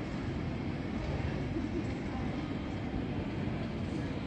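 Steady low rumble of city background noise, like distant traffic, with no distinct events.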